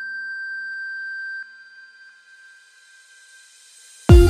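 Breakdown in a deep house track: a held high synth tone over faint lower notes that fade away. The tone cuts off about a second and a half in, leaving a quiet hiss that rises in pitch toward the end.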